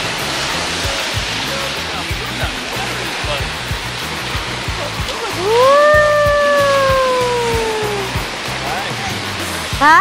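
Ocean surf washing on the shore with wind on the microphone, a steady rushing hiss. About five and a half seconds in, a high-pitched voice call slides up and then slowly falls for about two and a half seconds.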